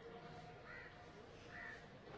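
Near silence with two faint, short bird calls in the distance, about a second apart.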